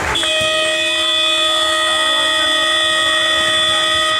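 Sports hall timing horn sounding one long, steady note for about four seconds, signalling the end of the match.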